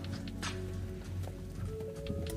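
Background music with held notes over a low bass, crossed by occasional sharp percussive hits.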